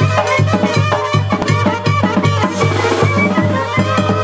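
Live Mexican brass band (banda) music played loud: tuba bass notes pulse steadily under a trumpet melody, with drum kit and bass drum keeping the beat.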